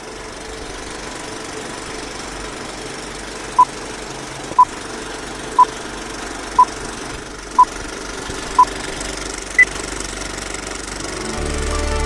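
Old-film countdown leader sound effect: a steady film projector whirr and clatter with a short beep every second, six beeps at one pitch followed by one higher beep. Music begins to come in near the end.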